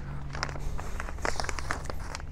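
Footsteps on a concrete paver walkway, with scattered small clicks and rustles over a faint steady low hum.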